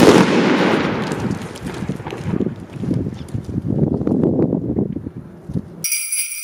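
A firecracker going off on pavement: one loud bang right at the start, then a few seconds of scattered crackling pops that fade away.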